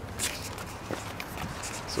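A few footsteps on dirt and gravel, short soft crunches over a low background.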